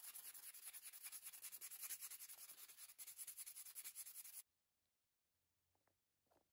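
Rapid back-and-forth scratchy rubbing on the paper cutter's handle, sanding it to prepare it for painting; it stops abruptly about four and a half seconds in.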